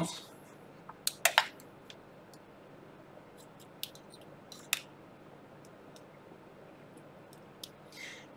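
Sharp little clicks and taps of alligator clip leads being handled and clipped onto a phone circuit board, the loudest a quick group of clicks about a second in, then a few scattered single ticks.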